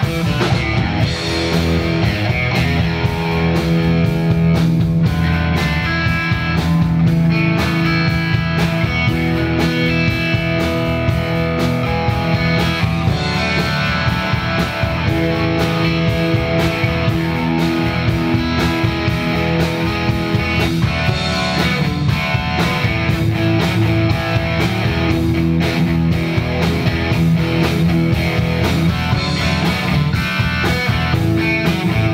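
Electric bass guitar soloing live, a continuous run of quickly plucked notes.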